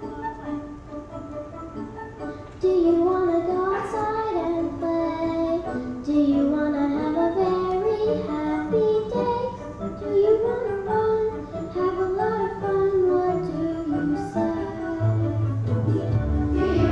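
A girl sings a solo into a microphone over instrumental accompaniment. It begins with a short, quieter instrumental opening, and her voice comes in, louder, about three seconds in.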